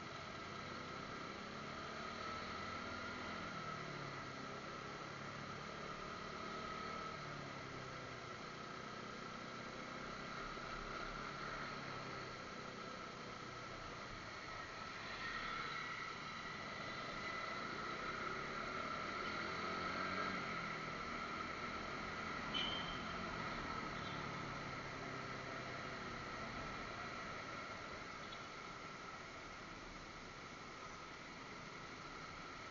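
Motorcycle engine and road noise picked up by a helmet-mounted action camera's microphone, the engine pitch rising and falling as the bike speeds up and slows in traffic. A steady high whine runs underneath, with one brief click about two-thirds of the way through.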